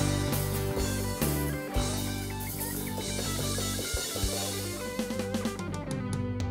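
A band playing live without vocals: guitars, bass guitar and drum kit, with a run of drum hits near the end.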